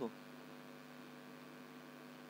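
A faint, steady electrical hum with light background hiss, holding one unchanging pitch.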